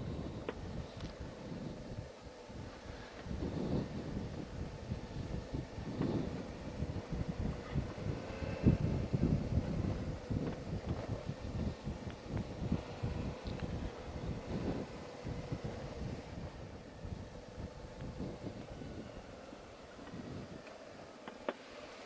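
Suzuki V-Strom 650's V-twin engine running at low speed on a dirt trail, a steady hum under uneven low rumble and wind buffeting on the bike-mounted microphone.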